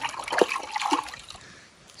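Water splashing and trickling in short irregular spurts, fading after about a second.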